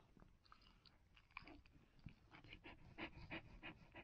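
Faint panting and small wet mouth clicks from a Siberian husky mother nosing and licking her newborn puppy, the clicks coming more often in the second half.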